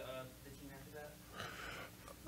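Faint, distant speech in a small room, then a short, sharp intake of breath about a second and a half in, as a man draws breath just before speaking.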